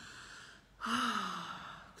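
A woman breathes in audibly, then lets out a long voiced sigh on the exhale, falling in pitch: a deepened breath released with sound, used to let go of tension.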